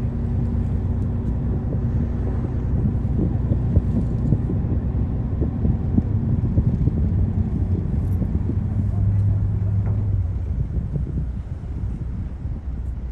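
Steady low hum and rumble of a boat's engine heard from its deck. The hum swells about nine seconds in, then eases off.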